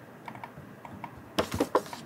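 A kitten's paws and claws tapping and clicking against a computer monitor and a wooden desk: a few faint clicks, then a quick run of sharp taps a little past halfway.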